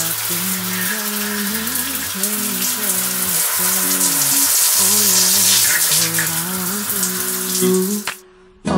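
Shower spray running steadily, a hiss of water on skin, hair and tiles, under background music with a slow melodic line.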